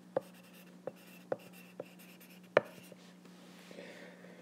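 Handwriting on an iPad touchscreen: the pen tip taps on the glass about five times in a few seconds, the loudest tap about two and a half seconds in. A faint steady low hum lies underneath.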